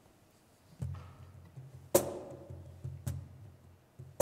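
Two sharp percussive taps about a second apart, the louder one first, over a low steady hum: a band's tempo count-in just before the song starts.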